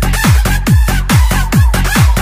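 Fast electronic dance remix: a heavy kick drum about two and a half beats a second, each beat falling in pitch, under a high line that keeps bending up and down in pitch.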